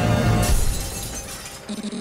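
Electronic dance music from a DJ set breaks off about half a second in with a sudden crashing effect that rings out and fades away. A spoken vocal sample in the track begins near the end.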